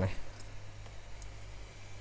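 Steady low electrical hum with a few faint, light clicks from the iPhone logic board being handled, following a short spoken word at the start.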